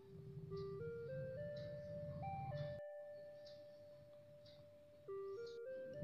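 Faint background music: a simple melody of single notes stepping upward, the top note held and fading away. The same rising phrase starts again about five seconds in.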